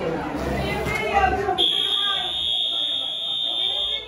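Fire alarm sounding one steady, piercing high-pitched tone that starts abruptly about a second and a half in, over a room of people talking.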